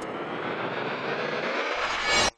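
Sound-designed logo-intro effect: a steady noisy whoosh with a low rumble rising near the end, building toward a louder hit.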